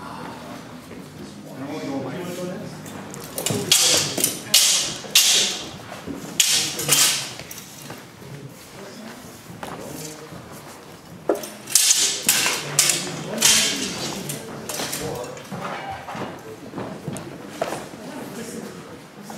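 Steel longswords clashing in a reverberant hall, in two flurries of sharp blade-on-blade strikes, the first about three and a half seconds in and the second a little before twelve seconds, with lower thuds and background voices between them.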